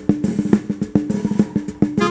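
Live band's drum kit playing a quick, even run of snare and bass-drum hits over a bass note, the drum intro that opens the song.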